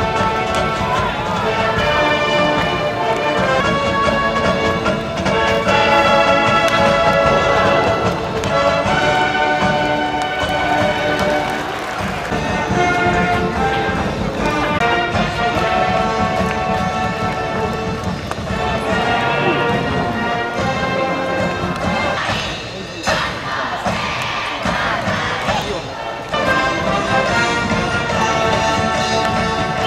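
Stadium cheering music: a band playing held brass notes with voices singing along, continuing without a break and dipping briefly twice near the end.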